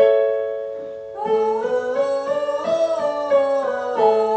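A chord struck on an electronic keyboard with a piano sound, left to die away. About a second in, a man and a woman begin singing a five-note scale up and back down into plastic ventilation masks held over their mouths, as a vocal warm-up exercise.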